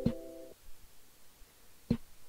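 Background music: a held electronic keyboard chord that cuts off about half a second in, with a sharp beat at the start and another near the end, and little sound between.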